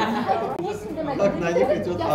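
Speech only: several people talking over one another at once.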